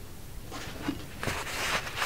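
A paper towel rustling in short bursts as it is picked up and rubbed over a bare metal baton handle, beginning about half a second in. It is wiping off leftover residue from the old grip tape.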